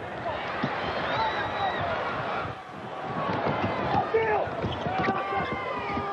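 Arena crowd noise during live basketball play, with sneakers squeaking on the hardwood court and a basketball bouncing, in short sharp sounds scattered throughout.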